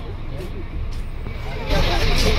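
Low, steady rumble in the cabin of a passenger bus, with other passengers' voices faint in the background. Near the end a loud hissing noise comes in.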